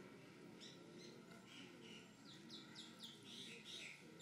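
Faint bird chirps: quick series of short, falling high notes, coming more thickly in the second half.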